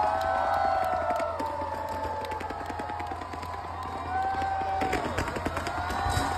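A large concert crowd cheering and screaming, many voices sliding up and down in pitch, with sharp pops and crackles from stage fireworks scattered throughout.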